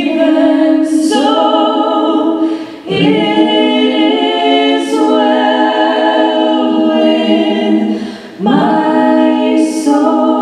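Three women singing a song in close harmony, unaccompanied, into microphones. They hold long notes and take short breaths about three seconds and eight and a half seconds in.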